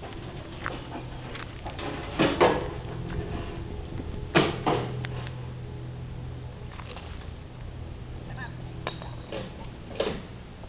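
An engine idling steadily, with a few sharp metallic clinks, loudest about two and four seconds in.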